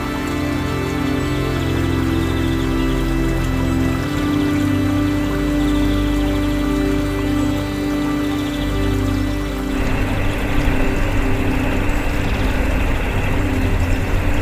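Background music with long held tones. About ten seconds in, it cuts out and the steady rush of a waterfall's white water tumbling over boulders takes over.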